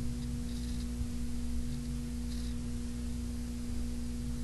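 Steady background hum: one low tone with a fainter one an octave above, over a low rumble, unchanging throughout.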